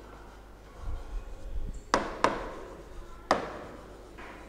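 A pen tip tapping on the glass face of an interactive display board while writing: three sharp taps, two close together about two seconds in and a third about a second later, after a soft low rumble.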